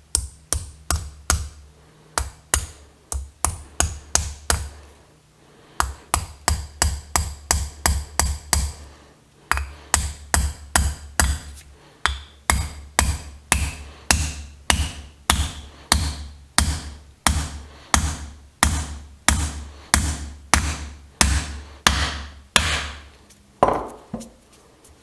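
Hammer blows driving a metal wedge into the end of a new wooden handle fitted in a copper sledge hammer head. Sharp metal-on-metal strikes, about two a second, come in runs with a few short pauses.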